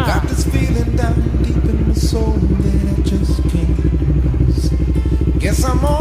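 Motorcycle engine idling steadily, with a few short snatches of voice or music over it.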